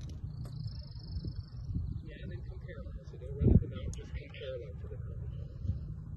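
Wind rumbling on an outdoor microphone, with faint voices and one short low thump about three and a half seconds in.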